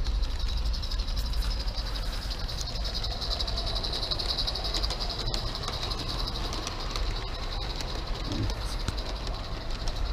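A small live-steam garden-scale model steam locomotive running along the track with its train of cars, over a steady high-pitched hiss.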